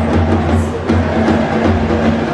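Football supporters' group in the stands drumming, a bass drum beating irregularly under dense crowd noise.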